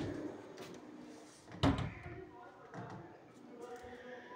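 A spoon stirring semolina through bubbling sugar syrup in an aluminium karahi, with one loud knock a little before halfway.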